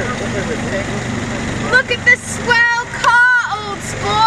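An open vintage-style roadster's engine running steadily with a low rumble. From about halfway, high-pitched excited voices call out over it.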